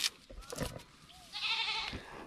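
A goat bleating once a little way off, in a short wavering call just before the end, with a faint knock at the very start.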